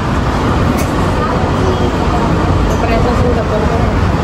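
Airport automated people-mover train running, a steady low rumble heard from inside the car.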